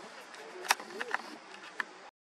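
Faint voices with several sharp clicks over a low hiss; the loudest click comes under a second in.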